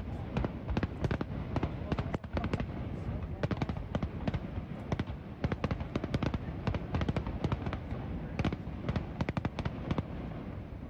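Aerial fireworks display: a rapid, irregular run of sharp bangs and crackles from bursting shells, many in quick succession.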